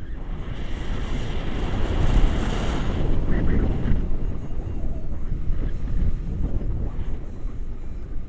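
Wind rushing over an action camera's microphone in paraglider flight, a steady low buffeting that swells and grows hissier about two to four seconds in.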